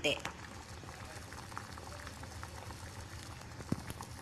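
Small potatoes in a saucepan of soy sauce, sugar and water at a full boil: a steady bubbling with faint scattered pops.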